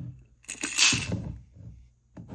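Handling noise of a 3D-printed plastic candy-dispenser base being fitted onto a glass jar of candy-coated chocolates: a loud scrape with a few sharp clicks about half a second in, dying away within a second.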